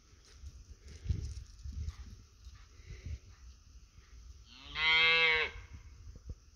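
A cow gives one loud moo, about a second long, some four and a half seconds in; the man calls it a funny bark.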